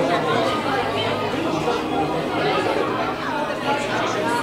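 Indistinct chatter of many people talking at once, with no break.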